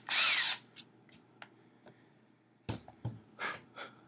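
Cordless drill whirring in a short trigger burst as the bit bores through a raw carrot, stopping about half a second in. A few sharp knocks and clicks follow near the end.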